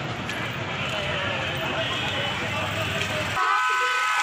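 Busy street noise: crowd chatter and traffic with a heavy low rumble. About three and a half seconds in it cuts off abruptly and a steady horn tone sounds.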